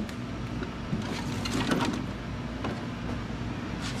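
A hard plastic motorcycle saddlebag being handled and opened off the bike: a few light clicks and rattles from the lid and its latch, over a steady low background hum.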